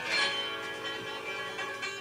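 A guitar chord strummed once and left ringing, with a lighter strum or note near the end.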